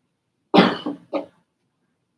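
A person coughing two or three times in quick succession, about half a second in, over in under a second.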